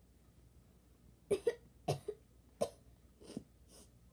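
A girl coughing: three sharp coughs about two-thirds of a second apart, then two softer ones.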